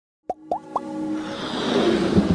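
Logo-animation intro sound effects: three quick pops, each a short upward blip, in the first second, then held tones under a swelling whoosh that builds toward an electronic music sting.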